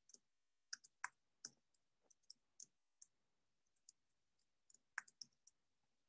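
Faint, irregular keystrokes on a computer keyboard: scattered single clicks of typing, a little louder about a second in and again about five seconds in.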